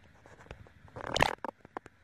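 Handling noise as neckband earphones and their cables are picked up and moved on a cloth sheet. There are scattered light clicks, a louder rustling scrape about a second in, and then a quick run of sharp clicks.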